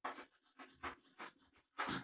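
Chalk writing on a chalkboard: a quick series of short scratchy strokes as a word is written out.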